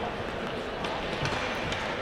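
Quiet ice hockey rink ambience during a stoppage in play: an even background hum of the arena with a few faint knocks.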